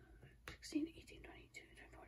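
A woman quietly whispering numbers under her breath as she counts the compartments of a plastic bead storage case, with a light tap of a fingertip on the plastic lids about half a second in.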